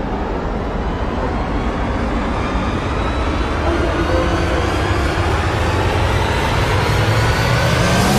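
Dramatic soundtrack swell: a dense, rushing build-up with a few faint held tones, growing steadily louder.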